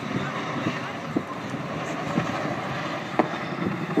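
Chinook tandem-rotor helicopter flying at a distance, a steady, noisy rotor-and-engine rumble with wind on the microphone, and a faint click about three seconds in.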